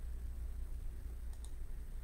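Two faint, quick clicks about a second and a half in, over a low steady hum in a small room.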